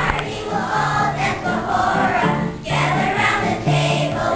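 A children's choir singing, accompanied by piano.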